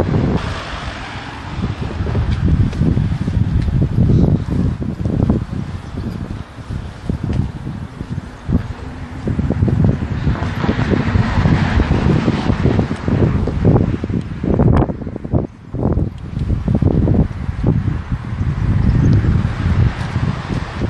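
Wind buffeting the microphone: a loud low rumble that swells and drops with the gusts.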